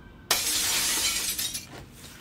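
A sudden shattering crash that starts about a third of a second in and dies away over about a second.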